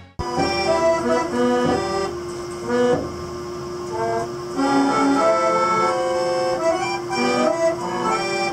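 Coin-operated orchestrion playing a tune, its accordion carrying the melody over a long held note.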